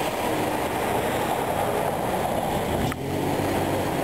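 Steady street traffic noise from passing cars, heard as a continuous low rumble.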